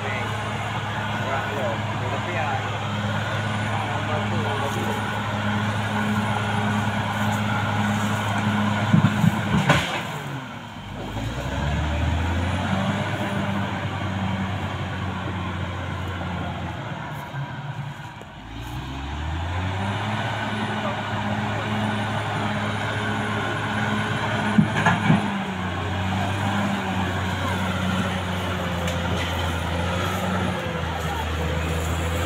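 Caterpillar D6R XL bulldozer's diesel engine running under load as it pushes brush and soil with its blade. Twice the engine speed sags and climbs back, about ten and eighteen seconds in, and there are short bursts of sharp clanking near nine and twenty-five seconds in.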